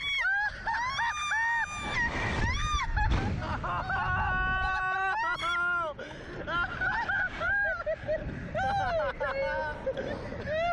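Two riders on a reverse-bungee Slingshot ride screaming and shrieking in rising and falling cries. One long, steady held scream comes about four seconds in. The cries turn shorter and laughing in the second half, over a rush of wind noise in the first three seconds.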